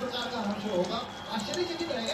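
Indistinct voices talking in the background, with no words clear enough to make out.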